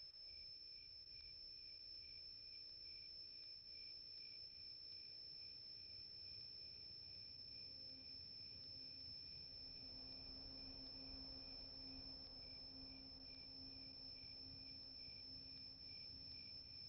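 Near silence: a faint, steady high-pitched whine over low hiss, with a fainter low hum coming in about halfway through.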